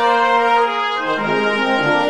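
Music: brass instruments playing sustained chords, the lower notes stepping to new pitches about a second in.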